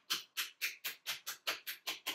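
Hands rapidly slapping and patting a bare foot, an even run of quick smacks, about four or five a second.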